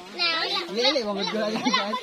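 People talking, children's voices among them.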